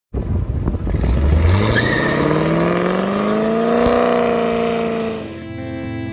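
Drag-racing cars, a C5 Corvette's V8 and a Camaro, launching off the line with a rough, loud start, the engine note climbing steadily for about four seconds and then easing off. Guitar music comes in near the end.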